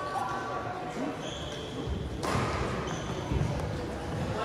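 Indistinct voices echoing in a large gymnasium, with a few low thuds and two short high squeaks.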